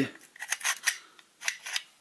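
Metal slide housing of a homemade Ruger-style pistol lighter being fitted onto its metal frame. The parts meet in a run of light metallic clicks and scrapes, some eight in under two seconds.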